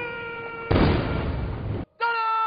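A long drawn-out shouted drill command held on one pitch, then partway through a single loud salute-cannon blast whose rumble carries on for about a second before the sound cuts off abruptly.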